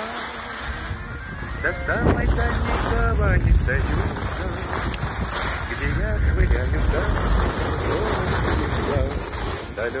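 Wind rumbling heavily on the microphone while skiing downhill, strongest through the middle and easing near the end, with the melody of a song going on underneath.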